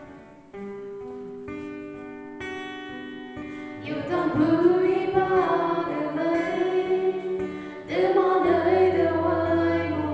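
Gospel song: an instrumental introduction of held, sustained notes, then singing comes in about four seconds in over the accompaniment, and a low bass note joins near the end.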